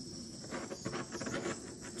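Small handheld butane torch running over wet acrylic pour paint on a tile, a steady high hiss.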